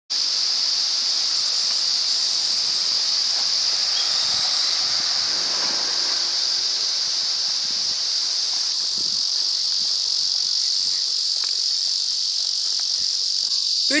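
A steady, high-pitched chorus of insects, unbroken throughout.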